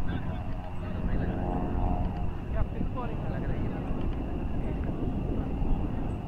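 Open-field ambience dominated by wind rumbling on the microphone, with distant players' voices calling across the ground and a faint steady drone.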